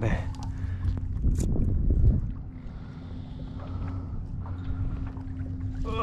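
Small waves lapping against a plastic kayak hull while the boat rocks on open water, with wind buffeting the microphone and a steady low hum underneath. The low rumble is strongest in the first two seconds, then eases.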